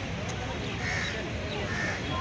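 Open-air ambience with distant voices and a bird cawing, two short calls about a second in and near the end.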